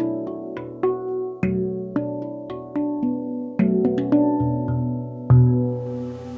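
Handpan struck by hand, single notes every half second or so, each ringing on and overlapping the next. A deeper, louder note comes about five seconds in.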